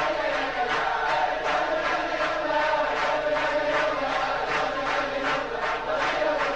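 A large crowd singing a Hasidic melody in unison, with hand claps keeping the beat about twice a second.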